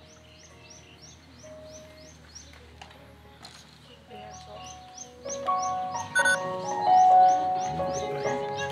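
A small bird chirping over and over, about three short high chirps a second, over quiet room tone. About five seconds in, the instrumental intro of a song's music starts and quickly gets much louder.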